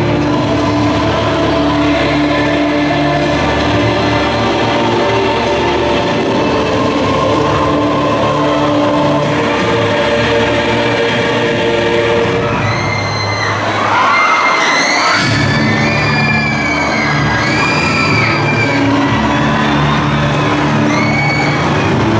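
Loud music with sustained bass notes accompanying a stage dance. About halfway through the low end drops out briefly, and the audience cheers and shouts over the music for several seconds.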